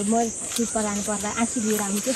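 A person's voice in short phrases, over a steady high-pitched hiss of insects in the field.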